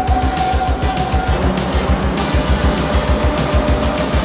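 Background music with a fast, steady beat.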